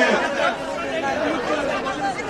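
Only speech: indistinct voices chattering among the crowd around the speaker, between his phrases.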